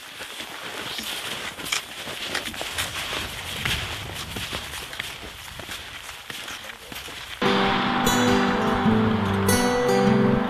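Snowshoes crunching and scuffing through fresh snow as two people walk uphill, an uneven run of steps. About seven seconds in, background music with steady held notes starts suddenly and carries on.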